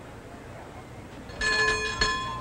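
Bell of a brass James Morrison engine order telegraph ringing as its handle is swung to a new order. The ring starts sharply with a brief clatter about one and a half seconds in and carries on past the end, over a low steady hum.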